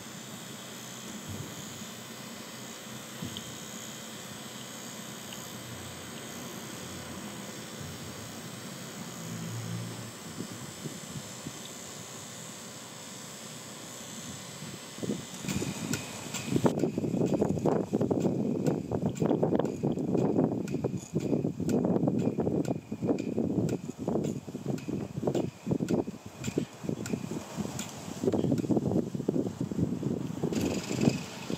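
Coal-fired live-steam garden-railway locomotive with its auxiliary steam blower on, a steady hiss while boiler pressure is still low. About halfway through, a louder, rapid, uneven puffing and clatter takes over as the locomotive runs.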